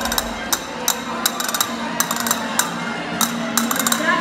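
Music with sharp, irregular clicking percussion, about three clicks a second, over a steady low held note.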